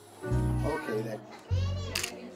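Background music: a few short, deep bass notes about a third of a second apart, with a brief high wavering tone near the end.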